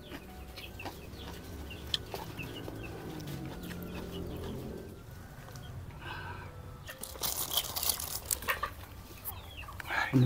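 A wooden spoon scraping and clinking in a ceramic bowl of meatball soup as it cuts into a large meatball, with a burst of clatter from about the seventh second. Quiet eating sounds and faint animal calls are heard in the background.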